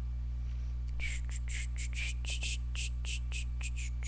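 A steady low hum, with a run of short, soft hissing swishes, about four a second, starting about a second in.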